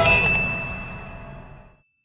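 A single high bell-like ding sound effect, one ringing tone that fades slowly, with a brief click just after it, over music that dies away well before the end.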